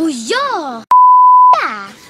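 A steady single-tone censor bleep starts with a click about a second in and lasts about two-thirds of a second, cutting into high-pitched speech on either side.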